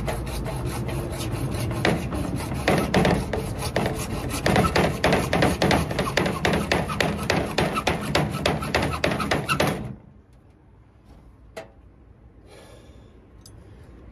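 Hacksaw cutting through heavy-duty 2-inch PVC pipe at an angle, in quick rasping back-and-forth strokes. The sawing stops abruptly about ten seconds in, leaving quiet broken by a single click.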